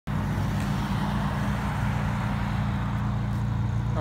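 A car engine idling, a steady low hum that does not change.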